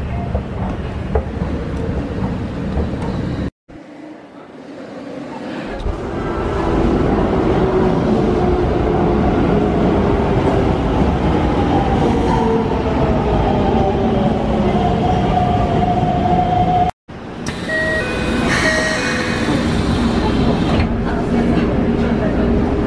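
An electric commuter train pulling into a station platform: a rumble builds as it approaches, then its motors whine in several tones that fall in pitch as it slows to a stop. Before it there is a short stretch of escalator and platform noise, and after it a few short electronic beeps.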